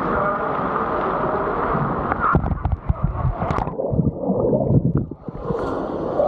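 Indoor pool water: fountains splashing steadily, then someone jumps in with splashes about two and a half seconds in. The sound then turns muffled and bubbly for over a second as the camera goes under, and clears again as it surfaces near the end.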